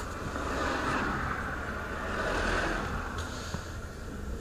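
Steady engine and tyre noise inside the cabin of a car driving at highway speed.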